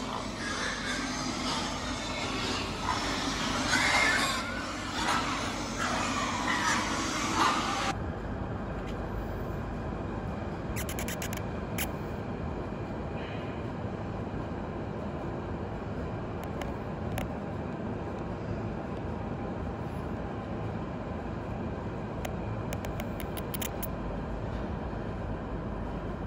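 Pigs in a pig house grunting and squealing for the first several seconds. Then, after a sudden change, a steady low rumble with a few sharp clicks now and then.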